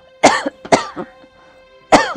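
A woman coughing: two hoarse coughs near the start, a weaker one about a second in, and a sharp, loud one at the end, each trailing off in a falling voiced sound.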